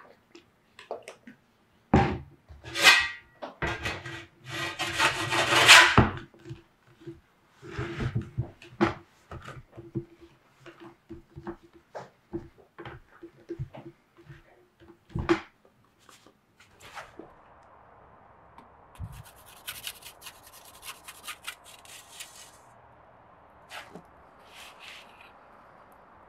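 Scraping, rubbing and knocking of a metal pizza peel and raw dough against a wooden board, loudest in the first few seconds. About two-thirds of the way in, a steady, even rush takes over, the flame of a Roccbox pizza oven, with some crackling.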